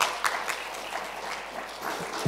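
Audience applauding, with dense clapping that thins a little toward the end.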